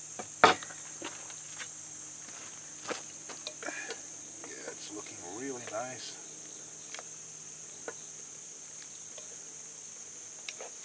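Insects calling in a steady high-pitched chorus. A sharp knock comes about half a second in, and scattered light clicks of a metal spoon in a cast-iron Dutch oven follow as the stew is stirred.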